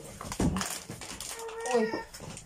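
A small child's brief whiny vocal sound near the end, after a soft knock about half a second in.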